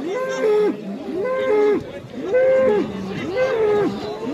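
A bull bellowing over and over while locked horns to horns with another bull. It gives about five drawn-out calls, each rising, holding and then falling in pitch.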